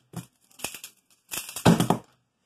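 Pyraminx turned in a rapid burst of plastic clicks and clatter during a sub-two-second speedsolve. It ends with the loudest knocks, as the solved puzzle is set down and both hands slap onto the timer pads.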